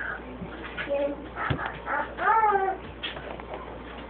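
A pet dog whimpering in short bursts, with one longer whine that rises and then falls a little past two seconds in.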